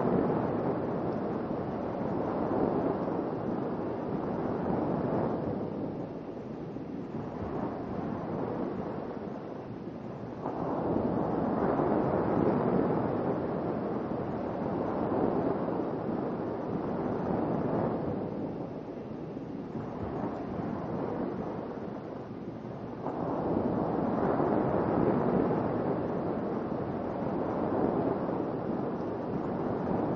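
Ocean waves washing onto a shore: a steady rush that swells and falls back in slow surges several seconds apart.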